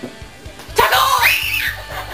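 A girl's high-pitched scream starting about three-quarters of a second in, its pitch rising and then falling, over background music.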